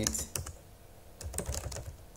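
Computer keyboard keys clicking in typing: a few keystrokes, a pause of under a second, then typing resumes with a run of quick clicks.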